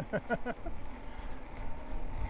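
A short laugh near the start, then the steady low rumble of an electric bike riding along a tarmac road: wind on the microphone and tyre noise.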